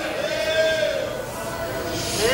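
A person's high, drawn-out vocal sound without words, wavering in pitch.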